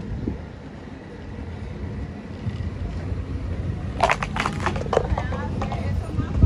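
Steady low rumble of city traffic and wind on the microphone, then about four seconds in a short run of light clattering knocks: a plastic cup kicked underfoot and skittering along the pavement.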